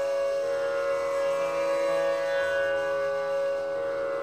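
Hindustani classical bansuri (long bamboo flute) holding long, sustained notes over a steady plucked-string drone.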